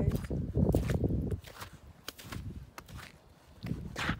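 Footsteps on wet slush and snow over pavement, a few separate steps. A low rumble fills the first second and a half.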